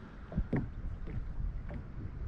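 Wind rumbling on the microphone and small waves lapping against a fishing kayak's hull, with two light knocks about half a second in.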